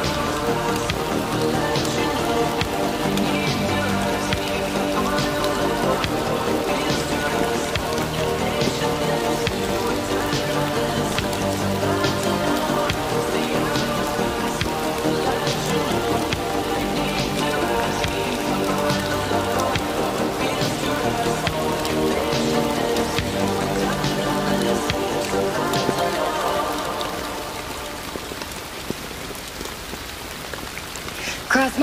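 Steady rain sound laid under slow instrumental music with long held notes. The music fades down near the end, leaving mostly the rain.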